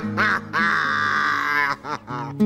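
A man laughing in a high, warbling cackle, a short burst and then a long wobbling one, over steady guitar-backed music.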